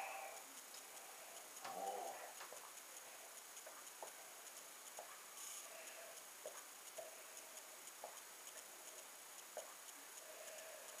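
Faint swallowing as a man drinks lager in a long draught from a glass: small, soft gulps about once a second.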